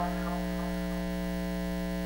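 Steady electrical mains hum: an unchanging buzz from the broadcast audio feed in the gap after a song ends.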